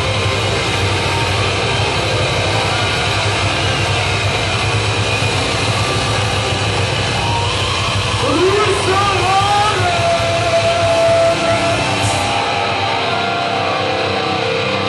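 Live heavy metal band heard from inside the crowd: a loud, steady wall of amplified sound without a clear drum beat, with a voice shouting or singing about two-thirds of the way through.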